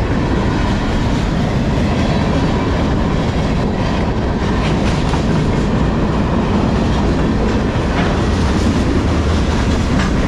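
Freight cars of a long CSX manifest train rolling past close by: a steady, loud rumble of steel wheels on the rails.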